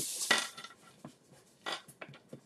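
Kraft cardstock being turned and slid across a plastic scoring board, a dry rustle at the start that fades within half a second. A brief scratchy sound comes near the end as the scoring stylus goes back to the paper.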